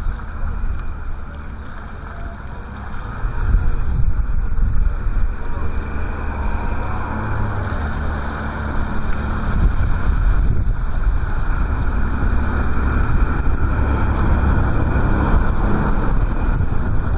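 Strong wind buffeting the microphone: a steady low rumble with a rushing hiss above it, growing louder about three seconds in.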